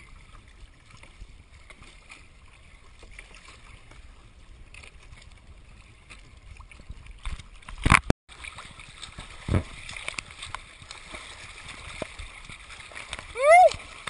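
Choppy open water sloshing and splashing around a surfboard and a camera at water level. About eight seconds in there is one loud, sharp splash-like hit, a smaller thud follows a moment later, and a short shout is heard near the end.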